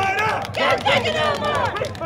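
Voices of a marching crowd of protesters, several people calling out and chanting at once.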